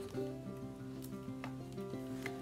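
Soft background music of sustained notes that change every half second or so, with a few faint clicks from a picture-book page being turned.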